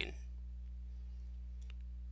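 Steady low electrical hum, with a single faint mouse click near the end.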